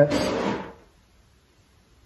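A short breathy exhale that fades out within the first second, then near silence.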